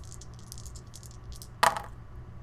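A pair of dice shaken in a hand, a quick run of light clicks, then tossed onto the game board, landing with one loud clatter near the end.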